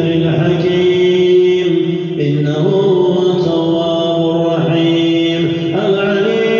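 An imam's chanted recitation through a microphone: one man's voice holding long notes and stepping from one pitch to the next.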